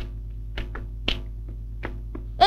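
A handful of short, sharp taps at uneven intervals, the brightest about a second in, over a steady low hum.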